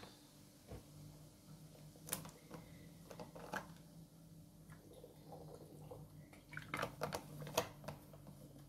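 Faint scattered clicks and short rustles of drawing materials being handled, a few close together near the end, over a low steady hum.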